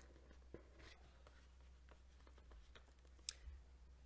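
Near silence: faint handling of a cardboard presentation box as its lid is lifted open, with one light click a little after three seconds in. A low steady hum runs underneath.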